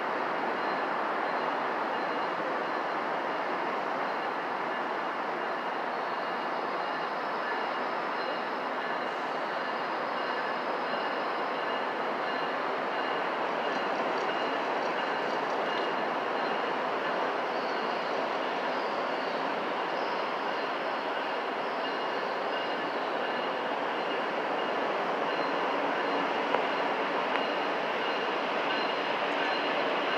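A passenger train rolling slowly past behind a Caltrans Siemens Charger locomotive: a steady rumble of wheels on rail with thin, steady high-pitched squealing tones over it. There are a couple of sharp clicks near the end.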